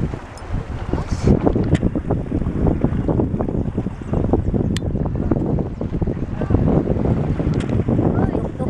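Wind blowing across the camera microphone: a loud, gusty low rumble that buffets unevenly throughout.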